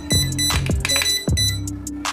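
Several short electronic beeps from an RC car transmitter as its steering trim is stepped to the right, each beep marking one trim step, over background music.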